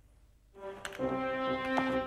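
Brass music with long held notes starts about half a second in, after a near-silent moment.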